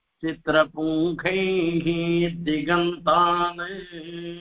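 A man chanting a Sanskrit verse in a melodic, sing-song recitation, with long held notes; the last note trails off just after the end.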